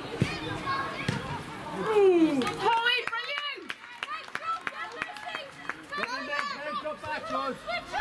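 High-pitched raised voices shouting and calling during a football match; the loudest is a long falling call about two seconds in.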